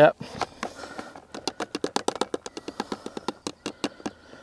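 Small hard fishing pellets dropping into a plastic bait box: a quick, irregular run of light clicks, several a second, starting about a second in.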